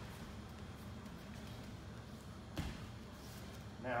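Grapplers moving on a padded training mat, with a single short thump about two and a half seconds in, over quiet room noise.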